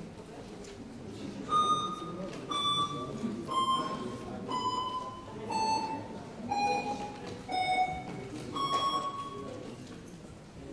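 Electronic voting system's signal during an open vote: a run of beeps about a second apart, the first seven each a step lower in pitch and the eighth higher again, over a low murmur of voices in the hall.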